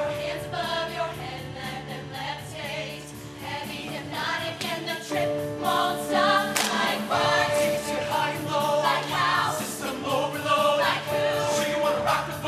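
Show choir singing an upbeat pop number in full voice over an instrumental backing with a steady beat.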